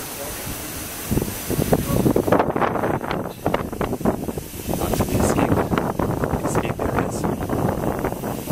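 Wind buffeting the microphone high on an open launch tower: an irregular, gusty rumble that starts about a second in and goes on in uneven gusts.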